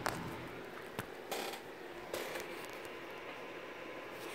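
Handling noise as the recording device is moved: a click, a sharp tap about a second in, and two short scuffs, then only a faint steady hiss.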